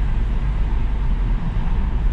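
Steady low engine and road rumble heard from inside the cabin of a Volkswagen Polo automatic driving at low speed.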